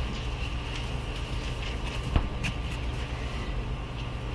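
Steady low hum of room noise, with one sharp knock about two seconds in and a fainter tick just after.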